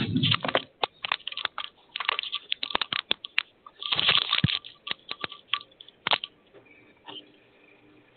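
A quick, irregular run of clicks, knocks and rustles, handling noise over a phone line, that stops about six seconds in.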